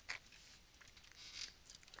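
Near silence with a few faint clicks of a computer mouse, one just after the start and a few more in the second half.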